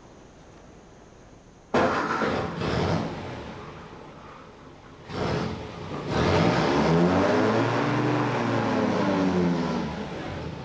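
A vintage car's petrol engine starts with a sudden burst a little under two seconds in and settles. It then revs up and the car pulls away, the engine note rising and then falling.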